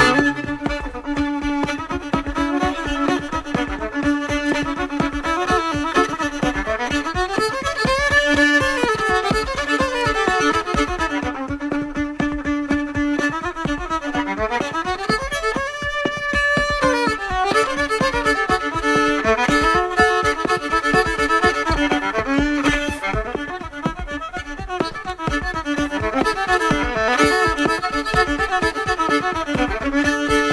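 Instrumental break of an old-time country song: a fiddle plays the melody with a held drone note and sliding pitch, over a steady rhythmic beat.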